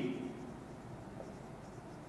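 Faint strokes of a marker pen on a whiteboard as words are written.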